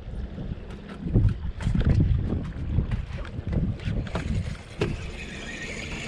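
Wind buffeting an action camera's microphone on an open boat, a low uneven rumble that swells and eases, with a few light knocks, the sharpest about five seconds in.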